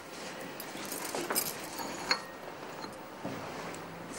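Light clinks of a small china coffee cup being handled, a few of them about one to two seconds in, over quiet room tone.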